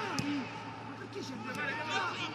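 Faint men's voices calling out on a football pitch, with no crowd noise behind them.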